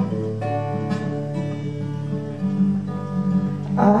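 Acoustic guitar played live through an instrumental passage of a song, chords ringing on, with a man's singing voice coming in near the end.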